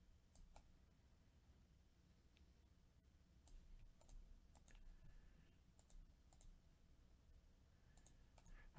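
Near silence: faint room tone with a dozen or so soft, scattered clicks.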